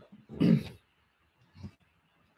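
A man's short wordless vocal sound, a pitched, breathy noise lasting about half a second, starting just under half a second in. A faint click follows near the end.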